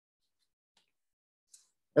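Near silence during a pause in a man's speech, with a faint brief tick about one and a half seconds in; his voice starts again at the very end.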